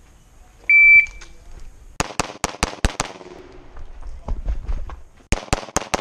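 A shot timer beeps once, and about a second later an open-division pistol with a compensator fires a fast string of six shots. After a pause of about two seconds, another rapid string begins near the end.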